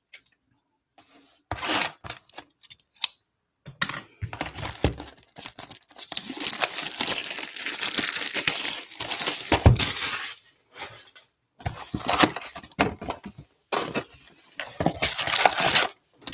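A cardboard trading-card hobby box being handled and opened: scattered knocks and taps, then a few seconds of dense crinkling and tearing of the packaging from about six seconds in, followed by more rustling and knocks.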